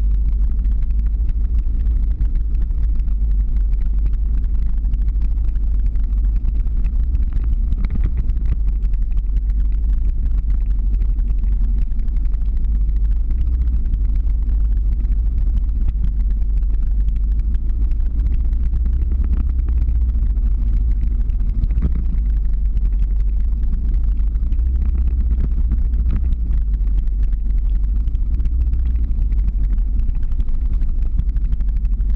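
Steady low rumble of a car driving slowly, heard from the vehicle carrying the camera.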